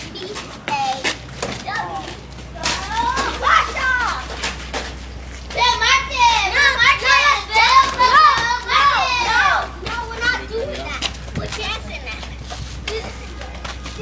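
Several children's high-pitched voices calling out and shrieking over one another, loudest from about six to nearly ten seconds in.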